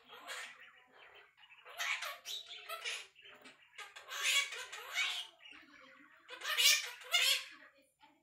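Quaker parrot chattering to itself in about five bursts of mimicked speech, "what a good boy" among them, with the loudest burst near the end.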